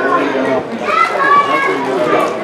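Several voices talking and calling out over each other at a football match, with a louder, drawn-out call about a second in.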